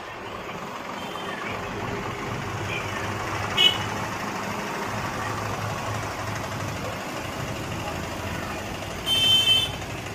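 A motor vehicle engine running steadily, growing a little louder over the first couple of seconds, with one sharp click partway through and a short, loud, high-pitched beep near the end.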